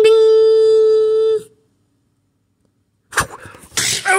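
A buzzer sounding one steady, unwavering tone that cuts off sharply about a second and a half in, followed near the end by a sudden burst of noise.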